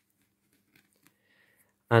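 Near silence with a couple of tiny faint ticks, then a man starts speaking near the end.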